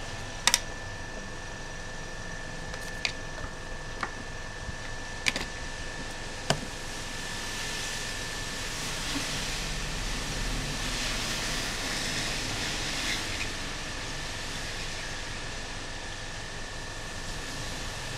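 Hot air rework station blowing a steady hiss with a faint steady whine, growing louder in the middle. Several sharp clicks of small tools being handled come in the first seven seconds.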